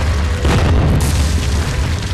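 Cinematic wall-smashing sound effect: a deep boom with a heavy low rumble, a crashing hit about half a second in, and a hissing rush of crumbling debris from about a second in, over intro music.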